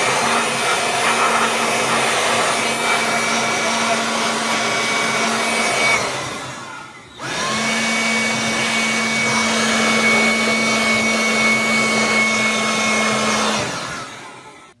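Air blower blowing off dirt around the transmission refill plug so nothing falls into the transmission when the plug comes out. It runs as a steady whoosh with a faint motor tone, in two long blasts about a second apart.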